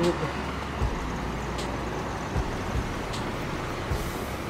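Steady street traffic noise from passing cars, with light regular knocks about every eight-tenths of a second from footsteps on the pavement.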